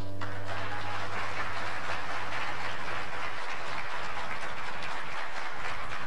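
Audience applauding steadily, with the last low note of the accompanying music dying away in the first few seconds.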